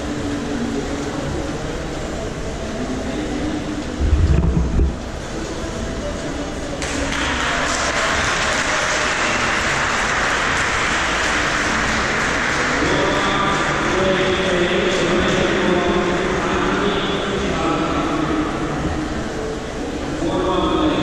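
Echoing indoor swimming-pool hall: distant voices under a steady noisy wash, which grows louder from about seven seconds in. There is a brief low rumble about four seconds in.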